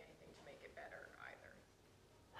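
Faint, distant speech, barely audible: a woman in the audience answering away from the microphone.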